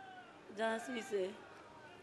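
A woman's short spoken reply into a hand microphone about half a second in, preceded by a faint, thin held tone.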